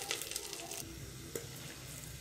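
Bay leaves and whole spices sizzling faintly in hot oil in the bottom of a pressure cooker, a soft steady crackle.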